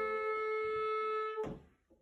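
A clarinet, with the small ensemble, holds one long steady note that stops about one and a half seconds in, leaving a brief silence.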